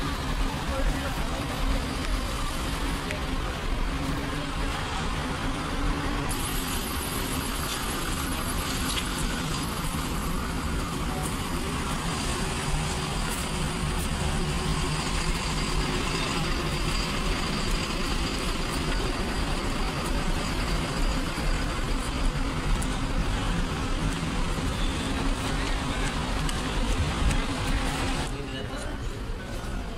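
Coach and car engines running, a steady low rumble of traffic, with people talking in the background.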